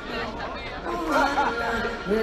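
People talking during a lull in live concert music, with the band faint underneath; singing and music come back in right at the end.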